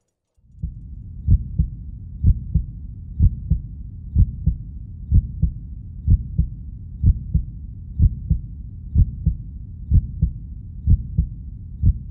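Heartbeat sound effect: paired low thumps, lub-dub, about once a second, over a low rumble.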